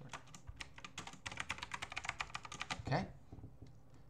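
Fast typing on a computer keyboard: a quick run of keystrokes that stops about three quarters of the way through.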